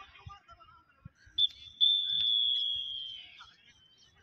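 Referee's whistle blown twice: a short pip, then one long blast that tails off slightly in pitch at the end, stopping play in a rugby sevens match.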